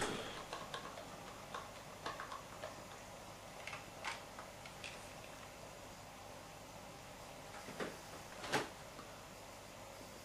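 Faint, irregular clicks from the buttons and handset of a corded landline telephone being dialled and lifted to the ear: several light ticks over the first five seconds, then two more near the end, over a low room hiss.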